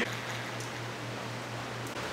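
Steady hiss with a low hum underneath; no distinct event.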